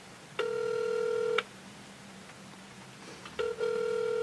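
Telephone ringback tone from a mobile phone's earpiece, picked up by the studio microphone: a steady one-second tone, heard twice about two seconds apart. It is the sign that the dialled phone is ringing and has not yet been answered.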